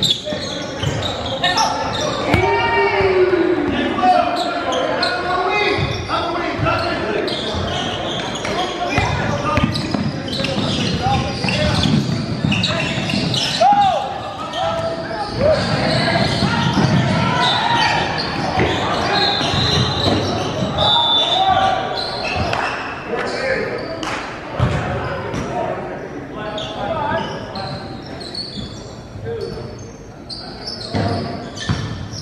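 Basketball dribbling and bouncing on a gym's hardwood court, mixed with shouting voices of players and spectators, echoing in a large hall.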